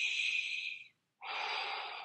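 A man's heavy breaths close to the microphone: two long breaths of about a second each with a short pause between, the first higher and hissier, the second fuller and lower.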